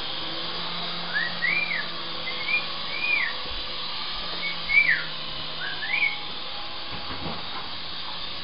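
Small electric motor and rotors of a toy remote-control Apache helicopter running steadily in flight. About half a dozen short whistled notes, each rising then falling, sound over it in the first six seconds.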